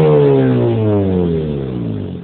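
Mazda RX-8's twin-rotor Renesis rotary engine, breathing through a Toyosports cat-back exhaust and de-catted downpipe, coming down off a rev: the pitch falls steadily and the sound fades as the revs drop back.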